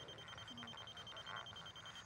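Spectra Precision HL450 laser receiver beeping quickly and evenly, a thin high-pitched beep. A fast beep on this kind of receiver is its signal that it sits above the rotary laser's beam, off grade.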